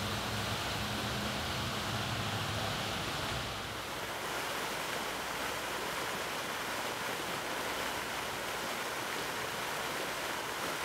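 Steady rushing splash of a pond fountain's water jet falling back onto the water. For the first three and a half seconds it is mixed with a low, steady hum, which then drops away.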